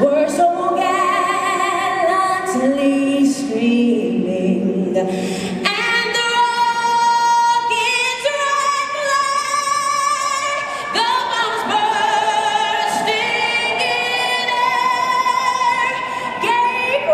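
A woman singing a national anthem solo into a microphone, amplified over the stadium PA, in long held notes with vibrato.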